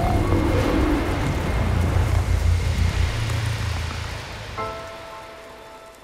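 Low rumble and crackling tail of an explosion under music, fading away; a held musical chord comes in about four and a half seconds in.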